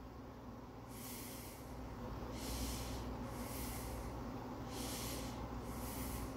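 Faint breathing through the nose close to the microphone, a soft hiss about once a second, over a low steady hum.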